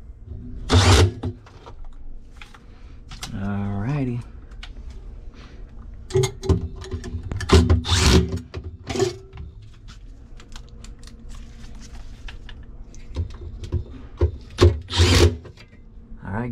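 Milwaukee cordless drill-driver running in several short bursts, driving screws into the sheet-metal evaporator fan panel of a commercial refrigerator, with clicks and rattles of metal between the bursts.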